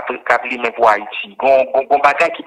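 Speech only: a man talking continuously, in French and Haitian Creole.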